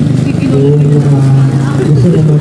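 Speech only: a man talking in Filipino over a public-address loudspeaker, with long drawn-out syllables.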